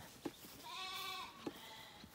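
A Zwartbles sheep bleats once, faint and wavering, for under a second just after the start, with a couple of faint clicks around it.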